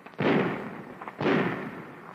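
Thompson .45 submachine gun fired in single shots on semi-automatic. Two shots about a second apart, each trailing off in a long echo.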